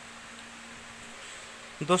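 A faint, steady low hum over light background hiss, with no other events; a man starts speaking near the end.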